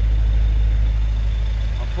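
A 1969 Ford Capri 1600's four-cylinder engine idling, picked up from beneath the car near the exhaust as a steady low rumble.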